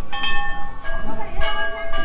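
Hanging metal temple bells being struck, one near the start and another, lower-pitched one under a second in, each ringing on with long steady tones.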